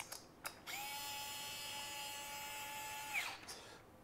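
Small electric screwdriver spinning the screw that fastens a driver head's hosel sleeve to a shaft, a steady motor whine of about two and a half seconds starting just under a second in. A couple of light clicks come before it.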